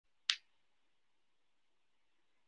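A single short, sharp click just after the start, followed by faint steady room hiss.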